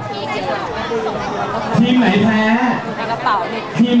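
Speech in Thai over the chatter of many people talking at once in a studio hall.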